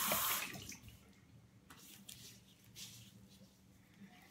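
Bathroom sink faucet running, turned off about half a second in, followed by a few faint brief splashes of water.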